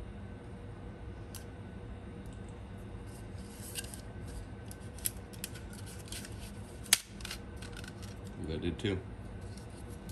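Hands handling a 3D-printed plastic part, with pieces clicking and rubbing against each other in scattered small clicks and one sharp click about seven seconds in, over a steady faint hum.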